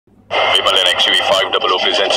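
Speech: a promo announcer's voice-over begins about a third of a second in, after a brief near-silence, and continues.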